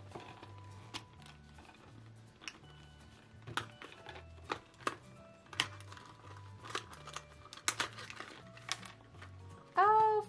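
A Hatchimals toy egg's shell cracking as fingers press on it: scattered small, sharp clicks and cracks, a few louder than the rest. Soft background music plays under it.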